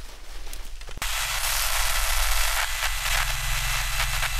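Electronic static over a low electrical hum: crackling at first, then about a second in it jumps abruptly to a loud, steady wash of hissing static.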